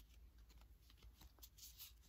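Faint rustling and light ticks of Pokémon trading cards being slid and flipped in the hands, barely above near silence.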